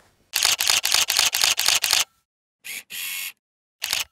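Single-lens reflex camera shutter firing in a rapid burst, about seven clicks a second for nearly two seconds, followed by three separate short shutter sounds.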